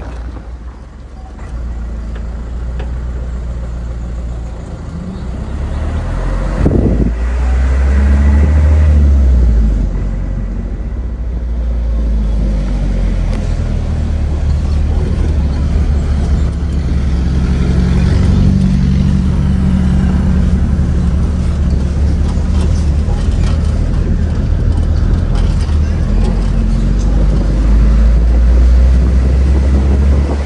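An Isuzu Elf minibus driving along a rough village road, heard from its roof: a steady low engine and road rumble that grows louder about six to eight seconds in and stays loud.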